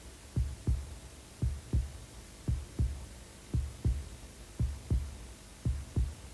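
Slow heartbeat sound effect: pairs of soft, low lub-dub thumps, about one pair a second, six in all.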